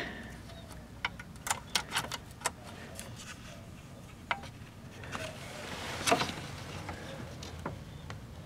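Faint clicks and light taps from hands working an old console record changer: a run of small clicks in the first few seconds as a control knob is turned, a few more knocks later, and a brief rustle of handling around the tonearm.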